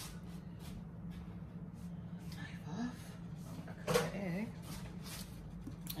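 Quiet kitchen handling: a chef's knife being wiped on a cloth towel, with a few light clicks and taps, over a steady low hum.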